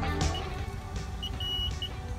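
Car wash code-entry keypad beeping: one short beep, then a short, a long and a short beep near the end, over a low idling rumble, as background music fades out.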